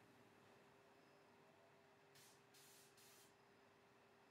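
Near silence: faint room tone with a steady low hum, and three faint short hisses a little over two seconds in.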